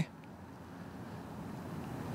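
Faint low rumble of distant road traffic, slowly growing louder.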